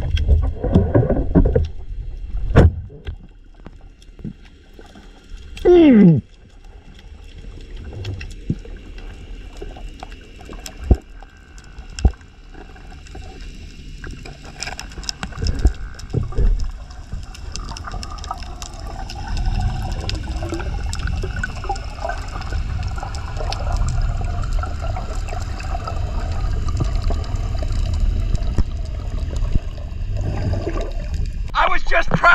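Underwater sound picked up by a camera on a freediver: low rushing water noise with a few sharp clicks and knocks. A loud falling tone comes about six seconds in, and a wavering hum with low rumble builds through the second half.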